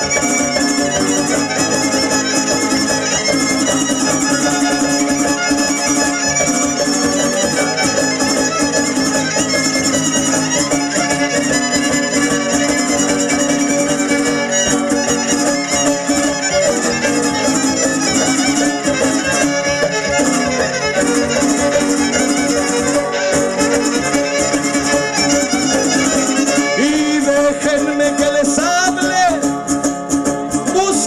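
A huapango arribeño (son arribeño) string ensemble plays an instrumental passage between sung verses, with two violins leading over guitar accompaniment, steady and without a break.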